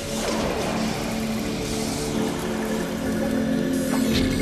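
Progressive psytrance music: held synth tones under a swirling, noisy texture, with a falling sweep just after the start and a sharp change into a new section at the end.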